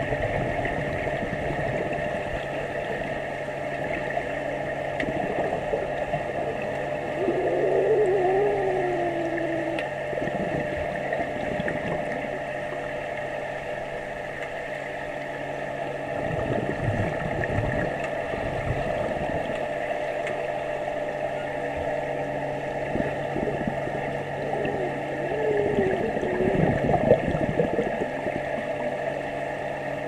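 Underwater sound of an indoor swimming pool picked up by a submerged action camera: a steady machine hum with several fixed tones carried through the water, over muffled splashing and gurgling from a child kicking nearby. Two brief, muffled wavering sounds rise and fall, one about seven seconds in and one near the end.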